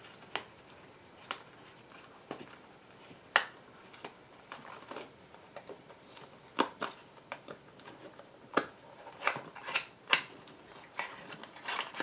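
Small cardboard product box being handled and opened by hand: scattered light taps, scrapes and clicks of the card, the sharpest about three seconds in, with a busier run of them around nine to ten seconds.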